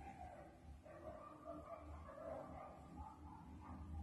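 Faint, distant calls from a pack of stray dogs: short, irregular yelps and whines, over a low rumble.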